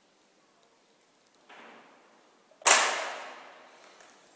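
A building's entrance door latch opening with a loud, sharp clack about two-thirds of the way in, echoing away over about a second, after a softer brief shuffle just before it.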